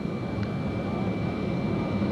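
Steady jet aircraft noise: a continuous rumble with a high, steady whine over it, and a single brief click about half a second in.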